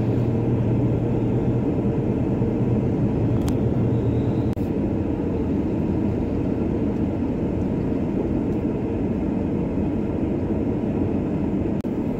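Steady engine and road noise of a car driving, heard from inside the cabin. A low drone eases off about four and a half seconds in, and the sound breaks off briefly twice.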